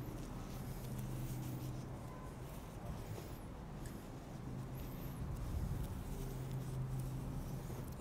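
Quiet low steady hum with faint rustling of an elastic compression bandage being held and handled on a leg.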